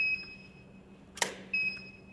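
A camera click with the flash firing, about a second in, between two steady high beeps from a Profoto D2 studio flash, one at the start and one just after the click. Each beep is the flash's ready signal that it has recycled after a shot.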